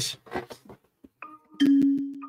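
Quiz app countdown sound effect: a short high blip just past a second in, then a low marimba-like tone that starts near the end and fades. It is one tone of the countdown that runs before the first question.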